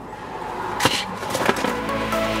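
Two sharp plastic clicks, a little over half a second apart, as a hand-held snowplow controller is handled. Electronic music fades in near the end.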